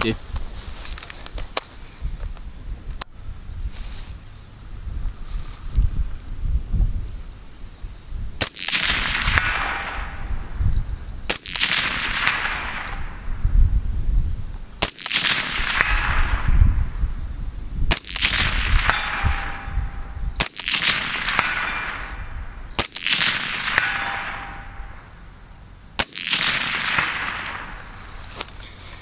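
A suppressed BCM 11.5-inch AR-15 short-barreled rifle firing about eight single, deliberate shots a few seconds apart, each a sharp crack. The later shots are followed by a long fading echo.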